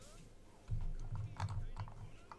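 A deep voice speaking from about two-thirds of a second in, with a few sharp clicks in among it.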